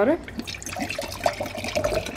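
Water poured from a one-litre plastic bottle into a glass mason-jar mug with a metal straw in it, splashing and gurgling as the glass fills.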